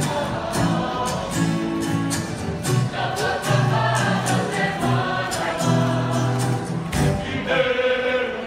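Large mixed Māori group of men and women singing together in unison, with acoustic guitar strumming a steady beat underneath.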